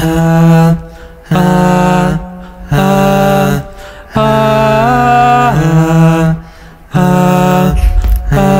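Two beatboxers' voices performing a cappella: a run of about six held, deep vocal notes, each around a second long with short gaps between them. The longest note, near the middle, bends up in pitch.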